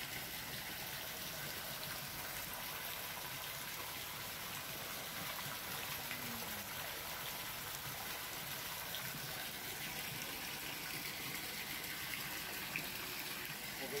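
Steady running and splashing water in a stingray holding tank, with no breaks or distinct events.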